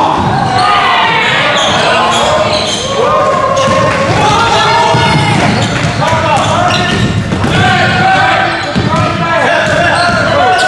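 Basketball game in a gymnasium: a ball dribbling on the hardwood floor, with many voices shouting over it in a reverberant hall.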